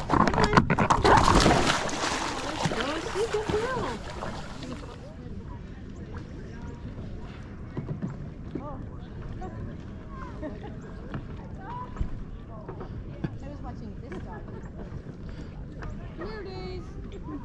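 Loud water splashing and sloshing around a paddleboard for the first few seconds, then an abrupt change to a quiet stretch of calm river with faint distant voices of other paddlers.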